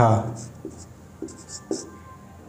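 Marker pen writing on a whiteboard in a handful of short, faint strokes, most of them in the second half, after a spoken word trails off at the start.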